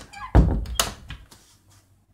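Interior panelled door pushed shut: a heavy thud as it meets the frame, then about half a second later a sharper click as the latch catches.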